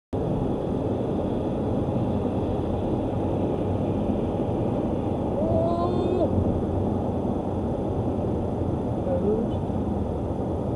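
Steady road and engine noise inside a moving vehicle's cab at highway speed, with a brief faint voice-like sound about halfway through.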